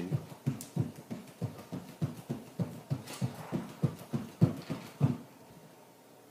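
Bare feet hopping quickly on a hardwood floor: a run of soft thuds about four a second, stopping about five seconds in.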